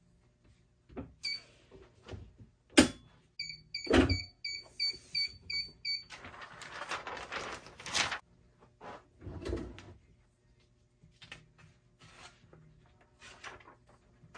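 Heat press timer beeping about eight times in quick succession, roughly three beeps a second, signalling the end of the press cycle, with a couple of sharp clunks from the press around it. Then paper rustling as the sublimation transfer is handled.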